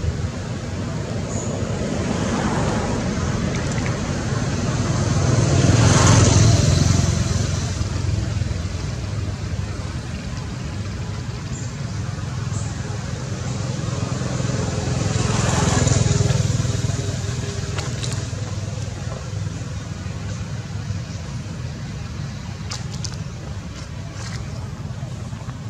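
Motor traffic: a steady background hum, with two vehicles passing by, swelling and fading about six seconds in and again about sixteen seconds in.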